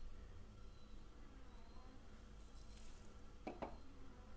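Near silence: quiet room tone with a faint low hum, and a brief soft sound near the end.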